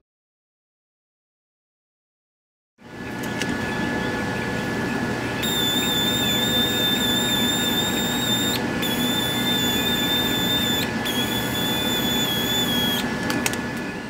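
Silence for about the first three seconds, then a pneumatic mini polisher running on shop air: a steady air hiss, with a high whine that comes in about five seconds in, wavers slightly, cuts out briefly twice and stops near the end. It is buffing freshly painted solid black paint.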